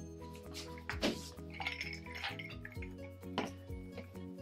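Ice cubes clinking in a drinking glass as it is handled, a few separate clinks, over steady background music.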